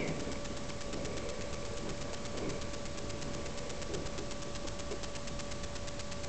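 Steady hiss with a thin constant whine and a fast, even ticking: the electrical self-noise of a cheap camera's built-in microphone, with only faint soft movement sounds under it.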